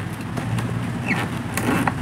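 A few light clicks and taps from fitting the plastic cap of an electric dry iron and handling its braided cord, over a steady low background hum.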